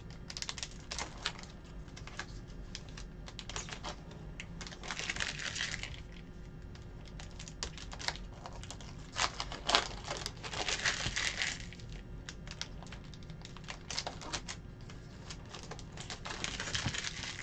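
Trading-card pack wrappers crinkling and tearing as packs are opened, with quick clicks of cards being flicked through and shuffled; two longer crinkling stretches come about five seconds in and again about ten to eleven seconds in.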